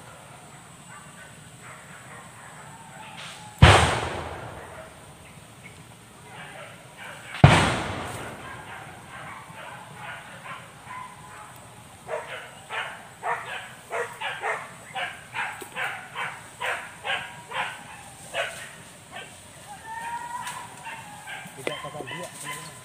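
Two loud bangs about four seconds apart, each dying away over about a second. Later, hunting dogs bark in a steady run of about two barks a second.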